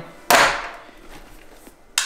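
Camera gear being handled in a padded camera backpack: a sudden loud rustle that fades within half a second, then a sharp click near the end.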